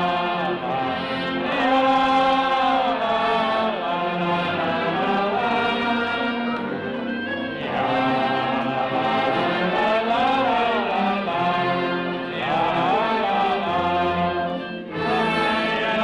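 Amateur wind band (harmonie) of clarinets, saxophones and brass playing a sustained melodic piece, with a short dip in level shortly before the end.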